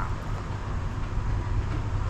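Steady low vehicle rumble under an even background hiss, with no distinct events.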